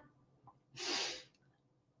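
A single short, sharp breath by a woman, lasting about half a second, about a second in.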